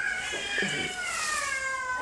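A single long, high-pitched animal call that falls slowly in pitch over about two seconds.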